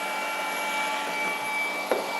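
Two cordless rotary polishers, a Hercules 20V brushless and a Flex, running side by side at their highest speed with no load: a steady whir with several steady high-pitched tones. There is a small knock near the end.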